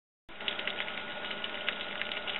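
Small homemade alcohol stove with a carbon felt wick burning under a pot: a steady faint hiss with many small, irregular ticks and crackles. It comes in after a moment of dead silence at the very start.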